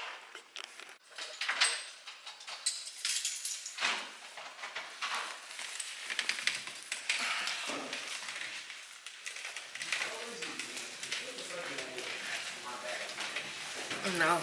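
Clatter and rustling of belongings being handled and carried: a run of clicks and knocks, with muffled, indistinct talk in the second half.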